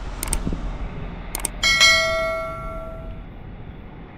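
Subscribe-button sound effect: two quick double clicks of a computer mouse, then a single bell ding about one and a half seconds in, ringing out over a second or so.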